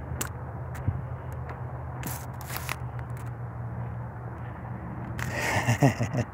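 Footsteps and scuffing on dry dirt and debris with phone handling noise, a few brief scrapes and a short rustle about two seconds in, over a steady low hum.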